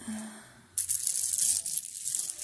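A heap of mixed buttons being stirred by hand on a knitted blanket: a dense rattling clatter and rustle that starts about a second in, after a short spoken 'uh'.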